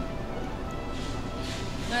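Soft background music with steady sustained tones over a low hum of restaurant room noise.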